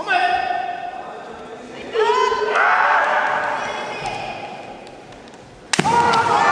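Kendo fighters' kiai: a long drawn-out shout at the start, then overlapping shouts from about two seconds in that fade away. Near the end comes a sharp crack of a bamboo shinai strike with a foot stamp on the wooden floor, followed by another loud shout.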